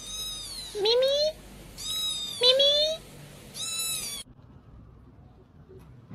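Kitten meowing repeatedly: about five meows in quick succession, some rising in pitch and some arching up and down. The meowing stops a little after four seconds in.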